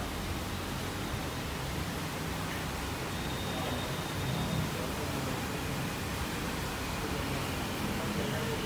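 Steady background noise: an even hiss over a low hum, with no distinct event.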